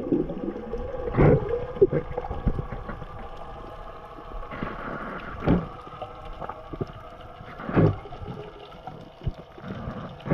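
Underwater sound of a freediving spearfisher descending: a steady rush of water against the camera, with three short louder swishes, about a second in, midway, and about three-quarters of the way through.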